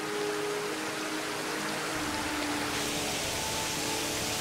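Waterfall rushing in a steady hiss of falling water, with soft, sustained music notes underneath. About halfway through, the rush grows deeper and fuller.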